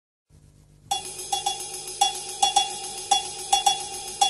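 A cowbell struck in a repeating syncopated pattern, about two to three ringing strikes a second, starting about a second in: the percussion intro of a recorded instrumental track.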